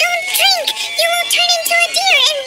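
A high-pitched, pitch-shifted character voice speaking in quick rising-and-falling syllables, with music under it.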